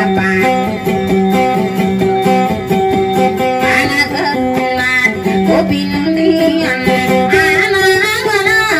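A woman singing a dayunday through a microphone, accompanying herself on an amplified electric guitar played flat across her lap: a repeating plucked melody over a steady low drone. Her voice comes in short gliding phrases at the start, about four seconds in, and near the end.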